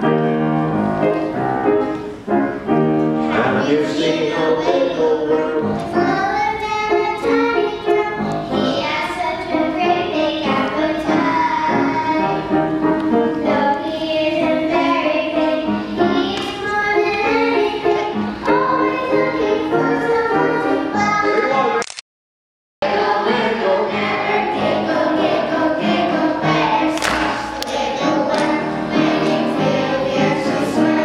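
Two young girls singing a children's song into microphones over recorded backing music. About two-thirds of the way through the sound cuts out completely for under a second, then a full children's choir is heard singing with the music.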